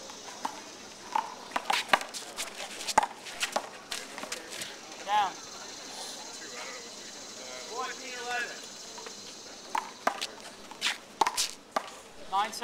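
Irregular sharp smacks of a small rubber handball bouncing on the concrete court and off the wall, thickest in the first few seconds and again near the end, with a quieter stretch in the middle. Brief voices come in between.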